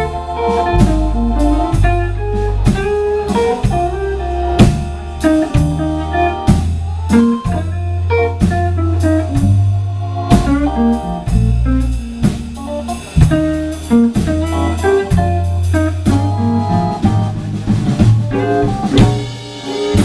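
Live blues band: an electric guitar, played on a semi-hollow body, takes a single-note solo over bass and a drum kit.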